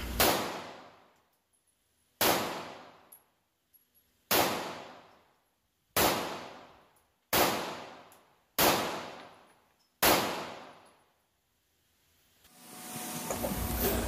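Rock Island Armory Rock Ultra compact 1911 pistol in 9mm firing seven single shots, about one every one and a half to two seconds, each shot followed by a short decaying echo.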